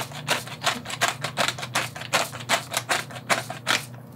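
Hand-twisted pepper mill grinding black peppercorns: a fast, even run of sharp clicks, several a second.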